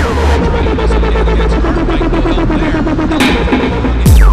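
Dubstep track with heavy sub-bass and a fast, stuttering repeated synth figure, built on industrial-style drums. A high tone sweeps sharply down right at the start.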